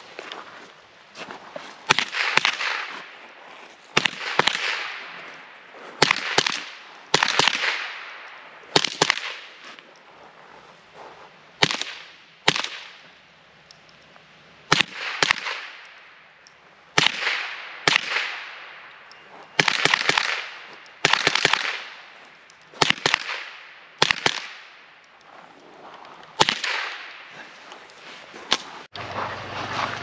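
An AR-15 converted to .22 LR with a CMMG conversion bolt firing a long string of shots at targets, many in quick pairs, every second or two. Each shot is followed by a fading echo.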